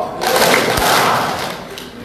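A congregation applauding briefly, the clapping swelling quickly and then fading out over about a second and a half.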